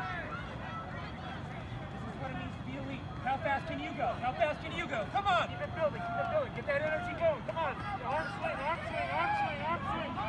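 Distant voices of spectators and people trackside, calling out and talking over a low outdoor background, growing busier about three seconds in.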